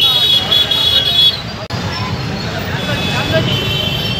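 Street crowd voices over motorcycle and auto-rickshaw traffic. A shrill high tone is held for about the first second. After a brief break it gives way to a steady traffic rumble.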